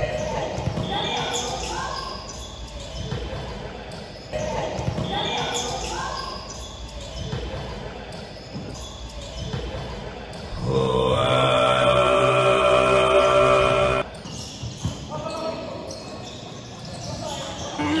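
Indoor volleyball rally: the ball being hit and bouncing on the court, with players' voices in a large gym. About eleven seconds in, loud dance music plays for three seconds, then the rally sounds return.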